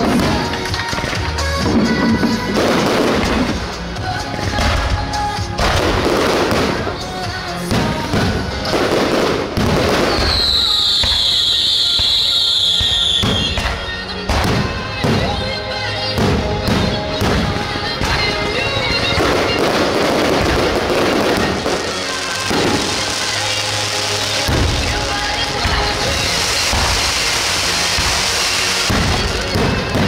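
Aerial fireworks going off in quick succession, a continuous run of bangs and crackles. About ten seconds in, a high whistle falls in pitch for about three seconds.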